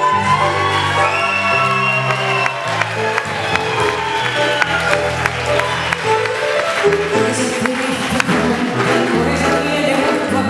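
Live tango orchestra playing, with sustained bass notes underneath and a female singer's voice carrying the melody over the first few seconds.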